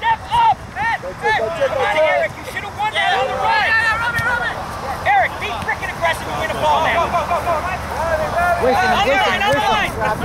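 Several voices shouting short calls across a soccer field during play, overlapping one another.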